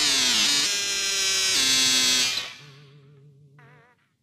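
Experimental electronic music at the close of a piece: layered synthesizer tones glide down in pitch near the start, then hold steady before dropping away about two and a half seconds in. A faint wavering tone over a low note lingers briefly, then the track cuts to silence just before the end.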